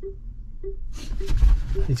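Car parking sensor beeping steadily, a short low-pitched beep about every 0.6 s while reversing. From about a second in, an excited golden retriever whines.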